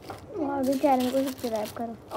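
Speech only: a person speaking.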